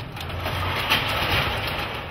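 Sectional garage door rolling open along its tracks: a steady rolling rattle with a low hum beneath, building over the first half second and then holding.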